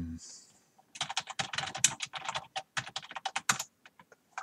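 Computer keyboard typing: a quick run of keystrokes from about a second in until near the end, typing out a short command.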